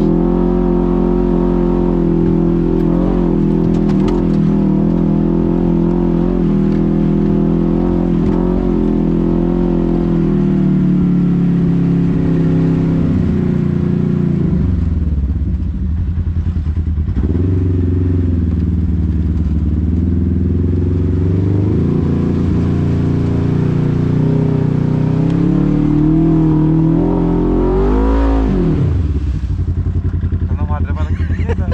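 Side-by-side UTV engine running under way on a dirt trail, heard from the cab: steady for about the first ten seconds, then the pitch shifts and dips as the throttle changes, with a sharp rev up near the end.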